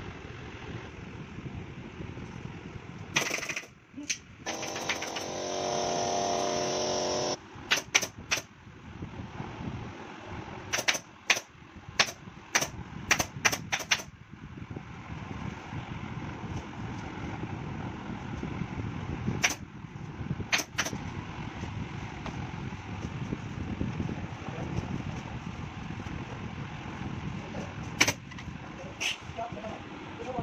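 Shredded-textile sofa stuffing being pulled and packed by hand, a rough rustling under a run of sharp clicks and knocks that come in quick bursts. A steady buzzing tone holds for about three seconds near the start and is the loudest sound.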